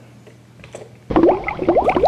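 Bubbling sound effect: a quick, dense stream of short rising bloops that starts suddenly about halfway through, after a moment of quiet room tone.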